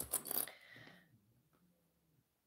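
A few sharp clicks and a light rattle of small plastic sewing clips being picked from a pile, with a brief rustle of fabric, fading out about a second in.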